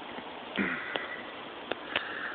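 A person sniffing through the nose close to the phone's microphone: a half-second sniff about halfway in and a shorter one near the end, with a few sharp clicks between them.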